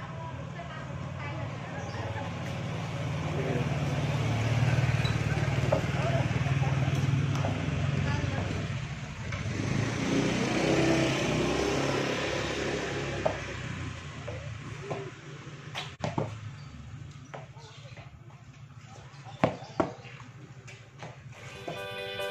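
A small motor scooter passing along the street, its engine steadily growing louder and then fading away about two-thirds of the way through. A few sharp clicks follow near the end.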